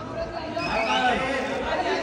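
Indistinct chatter, with several voices talking over one another: photographers calling out at a red-carpet photo call.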